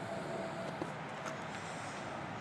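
Steady outdoor urban background noise with no distinct events.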